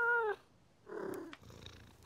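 Cartoon cat's one long, level meow, which ends just after the start, then about a second in a short rough grumble trailing into a faint low purr.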